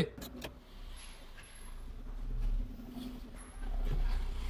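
Fiat Uno Mille's small four-cylinder engine running at low revs as the car creeps forward. The engine gets louder about two seconds in and again near the end. A few light clicks come at the start.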